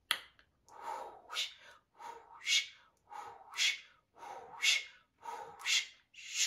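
A woman making whispered, breathy hissing sounds in a steady rhythm, about one a second, each a soft breath followed by a sharp 'sh'-like hiss: unvoiced light-language vocalizing.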